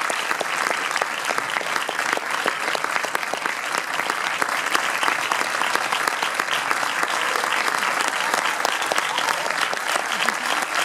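Audience applauding steadily: a dense mass of many hand claps.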